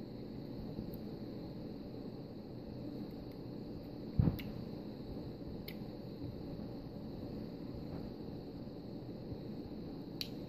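Fingers working at a small sealed jar of holographic nail glitter while trying to open it: faint handling clicks over a steady low hiss, with one sharp click about four seconds in.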